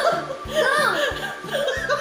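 A woman laughing loudly, in repeated rising and falling peals, over background music with a steady quick beat.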